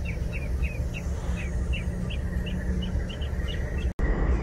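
A small bird calling a quick series of short chirps, about three a second, over a steady low rumble. The sound breaks off abruptly just before the end.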